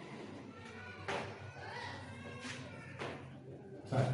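Dry-erase marker squeaking and scratching on a whiteboard in several short strokes as words are written.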